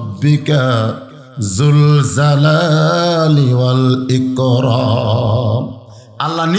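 A man's voice chanting in a long melodic line, holding and bending drawn-out notes, with a short breath pause about a second in; the last held note wavers and fades just before the end.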